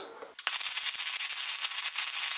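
Electric welding arc on steel square tube: it strikes suddenly about a third of a second in, then keeps up a steady crackle.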